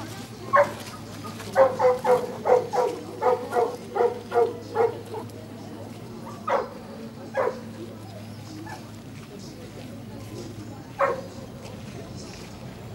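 A dog barking: one bark, then a quick run of about ten barks, then three more single barks spaced well apart.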